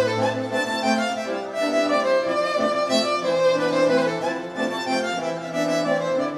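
Amplified violin bowing a melody over a sustained bass line below the violin's range, the bass changing note every second or two.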